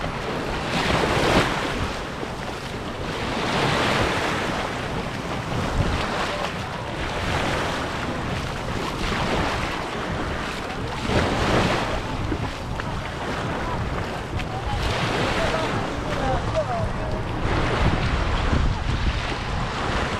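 Small waves breaking and washing up a sand beach at the water's edge, surging every few seconds, over a low rumble of wind on the microphone.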